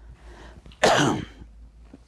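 A man's single loud sneeze about a second in, after a short breathy intake.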